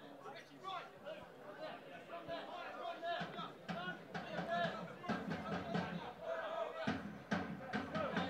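Low-level chatter of spectators at a football ground, with a musical sound underneath that grows stronger after about five seconds.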